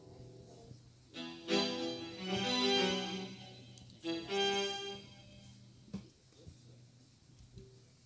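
Electronic keyboard with an accordion-like voice playing a short run of melody notes, in two brief phrases about a second and four seconds in, then stopping, like a warm-up before the song.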